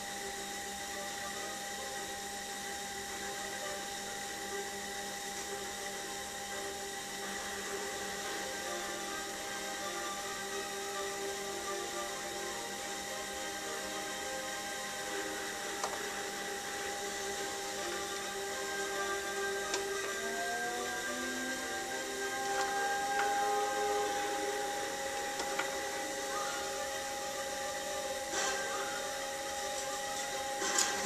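Electric potter's wheel motor running with a steady whine while a loop trimming tool shaves a leather-hard clay cup turning on it; the whine shifts slightly in pitch about twenty seconds in.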